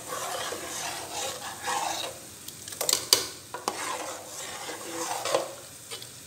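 A metal ladle stirring milky rice kheer in a metal pot, mixing in just-added custard powder, with a few sharp clicks of the ladle against the pot around the middle.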